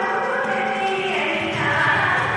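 Indian classical vocal music for a Kuchipudi dance: a sung melody of long held notes that slides down in pitch about a second in.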